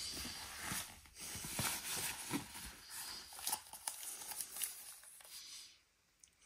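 Rustling and crinkling of packaging being handled during an unboxing, with light clicks and taps, fading out near the end.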